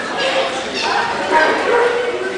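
A puppy barking in short yips over people talking.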